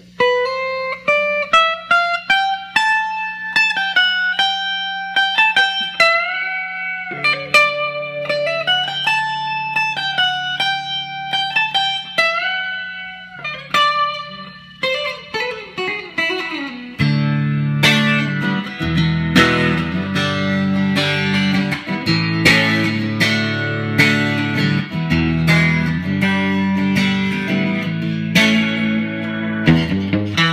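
1965 Fender Stratocaster electric guitar played with a pick through an amp. A single-note melody with bent, gliding notes over a held low note gives way, just past halfway, to fuller and louder chordal playing with strummed attacks.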